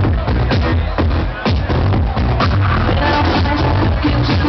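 House music played by a DJ over a club sound system, loud, with a steady kick drum about twice a second under a heavy bassline.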